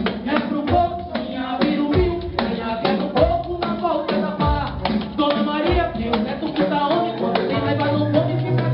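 Live band music with a steady drum and percussion beat: a fusion of Brazilian côco and ragga.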